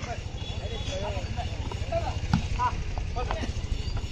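Volleyball rally on an outdoor court over a steady low rumble, with short shouts from players and onlookers. A single sharp smack of the ball being struck comes a little past the middle.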